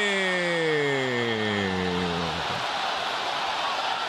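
A man's drawn-out cry sliding steadily down in pitch for about two and a half seconds, a commentator's reaction to a shot striking the post. It fades into the steady noise of a stadium crowd, which carries on alone.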